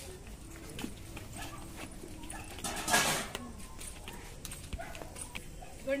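A dog barking once, a short loud bark about three seconds in, over faint background noise.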